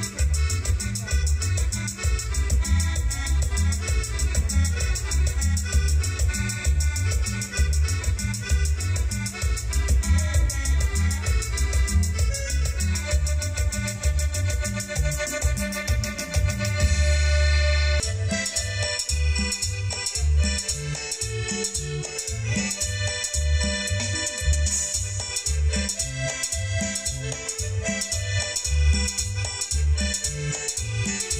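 Latin dance music played live on an electronic keyboard through PA speakers, with a steady, heavy bass beat and an accordion-like lead. About 18 seconds in, the arrangement changes abruptly to a new section with a lighter bass.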